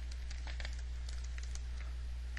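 Steady low electrical hum on the recording, with a few faint computer keyboard key clicks as code is copied and pasted.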